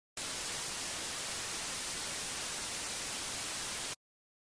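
Steady hiss of white-noise static, starting abruptly and cutting off suddenly just before the end.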